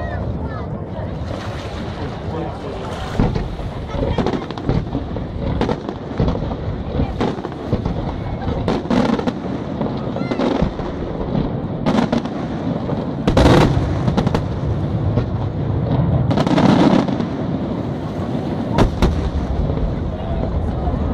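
Aerial firework shells bursting over and over in quick succession, with a steady rumble between the bangs. The heaviest bursts come about two-thirds of the way in and again shortly after.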